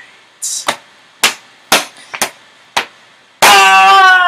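Six sharp knocks, roughly half a second apart, then a boy's loud held yell about three and a half seconds in.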